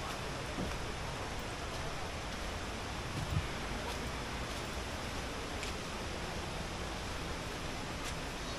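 Steady, even outdoor background hiss with a single soft thump about three seconds in.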